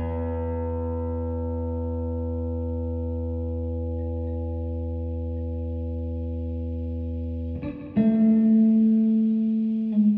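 Electric guitar through an amplifier: a chord struck and held, ringing at a steady level for about seven and a half seconds, then a short break and a second, louder chord struck about eight seconds in.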